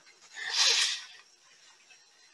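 A person's short, breathy exhale, a hiss of air about half a second long, starting about half a second in.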